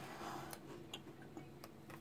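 A few faint, sparse clicks over quiet room tone.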